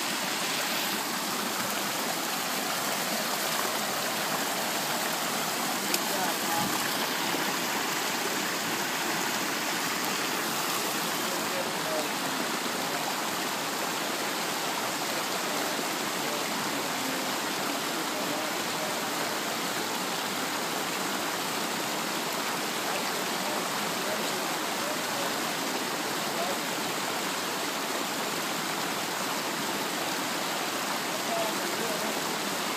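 Shallow river water rushing steadily over its bed.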